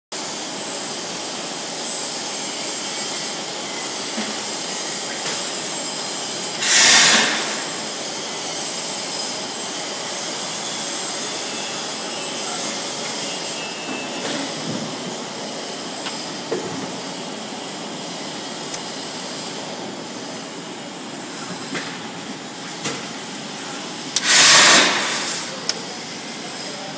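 Extrusion blow molding machine running with a steady hum and hiss, broken twice by a loud burst of air hissing for about a second, some 17 seconds apart, with a few faint clicks in between.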